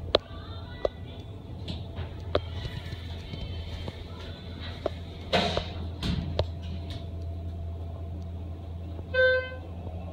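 Schindler HT hydraulic elevator cab: a steady low hum with scattered clicks, a louder clatter about five seconds in, and a short electronic beep near the end as the car heads down to floor 1.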